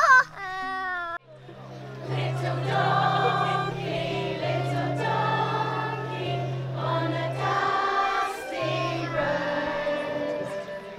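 A child's loud, high-pitched shout cuts off about a second in. It is followed by a choir singing a song over a steady accompaniment, with bass notes that change in steps.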